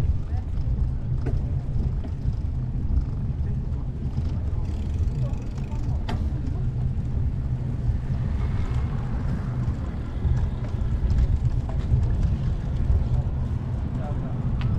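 Low, fluctuating rumble of wind and riding noise on a camera microphone while cycling, with faint voices and a few light clicks in the background.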